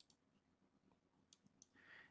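Near silence, with a few faint computer mouse clicks in the second half.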